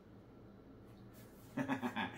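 Quiet room tone, then about one and a half seconds in a man breaks into a short laugh.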